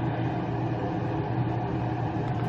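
A steady low mechanical hum with a faint even hiss, unchanging throughout.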